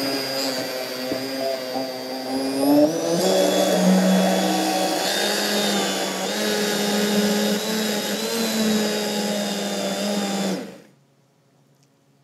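Robot Coupe Mini MP-series immersion blender running with its blades in water and kidney beans. It holds a steady whine, changes speed about three seconds in, and cuts off abruptly near the end.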